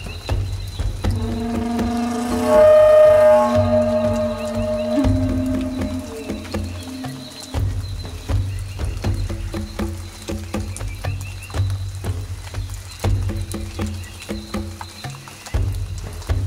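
Meditation music: a Native American flute playing long held notes, strongest about two to five seconds in, over a low pulsing rumble with a rain-and-nature sound bed.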